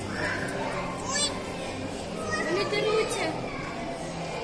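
Children talking and calling out, with a brief high squeal about a second in and a louder stretch of a child's voice in the second half.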